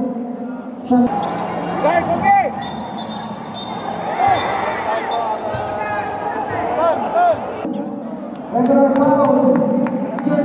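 Basketball game sounds in a large gym: sneakers squeaking in short chirps on the hardwood court and a ball bouncing, over crowd noise. Sustained voices are heard just before the first second and again from about two seconds before the end.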